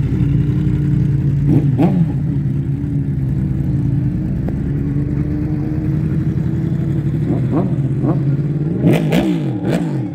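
Sport motorcycle engine running steadily, with a couple of quick throttle blips about two seconds in, as the bike pulls away. Near the end come several quick rising and falling revs as it rides off.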